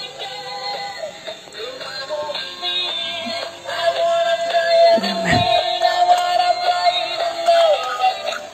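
A battery-style light-up children's toy playing its built-in electronic song, a tinny synthetic singing voice over a simple tune. The song holds one long note through the second half.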